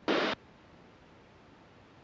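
A brief burst of static-like hiss on the headset radio and intercom feed, lasting about a third of a second as the radio transmission ends, followed by near silence with no engine noise audible.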